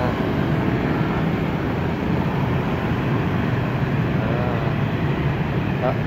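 Steady city street traffic: motorbikes and cars running past in a continuous wash of engine and road noise.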